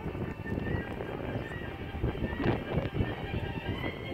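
A pony trotting on sand arena footing, its hoofbeats coming as irregular low thuds, with a louder noisy burst about two and a half seconds in. Music plays throughout.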